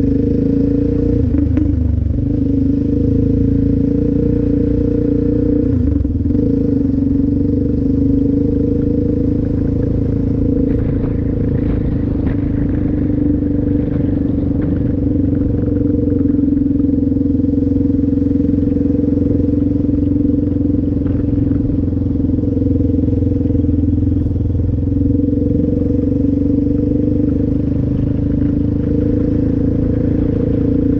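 Yamaha Raptor 700R quad's single-cylinder four-stroke engine running at a steady cruising speed on a gravel road, its pitch holding level throughout.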